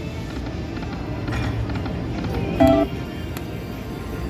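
Rich Rich Chocolate Respins video slot machine playing its spin music and sound effects as the reels spin, with a short two-tone chime about two and a half seconds in, over the steady din of a casino floor.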